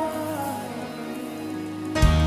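A held keyboard chord sustains under the tail of a girl's sung note, which glides down and fades out in the first half second.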